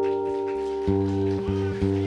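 Acoustic guitar's final chord ringing out at the end of the song, with a few more low notes plucked under it about a second in.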